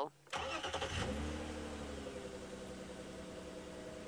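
Safari vehicle's engine starting: it catches about a third of a second in and then runs, the revs easing down to a steady idle.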